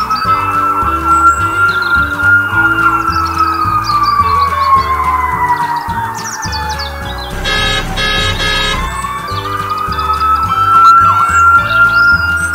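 An ambulance-style siren wailing, its pitch rising, falling slowly over several seconds and rising again, over background music with a steady beat. About seven and a half seconds in, a harsh buzzing sound lasts about a second.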